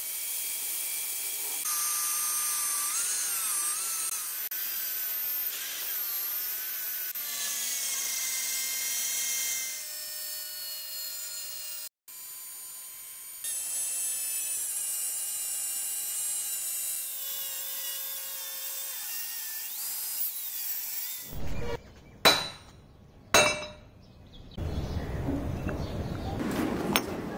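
Angle grinder with an abrasive cut-off disc cutting through a rusty steel rail section: a high whine that wavers in pitch as the disc loads and unloads in the cut, broken off briefly about halfway through. Near the end the whine gives way to a rougher noise with two sharp knocks about a second apart.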